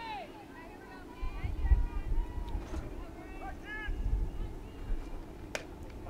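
Faint voices of players and spectators calling out across the softball field, with gusts of wind rumbling on the microphone. Near the end comes a single sharp pop as the pitched softball smacks into the catcher's mitt.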